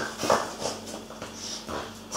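A seven-week-old Labrador Retriever puppy moving on a tiled floor as it gets up from lying down, with a few brief scuffling noises.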